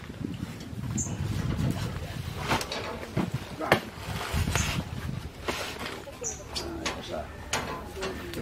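Knocks and bumps of foam boxes of fish being loaded into a motorcycle tricycle's metal cargo cage, the loudest a single sharp knock about halfway through, with people talking in the background.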